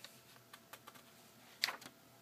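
Thin newsprint catalog pages being handled: a few small paper ticks, then a louder, sharp crackle as a page is turned near the end.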